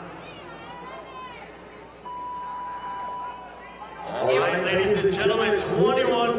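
Electronic start beep: one steady tone held for just over a second, about two seconds in. Loud voices take over near the end.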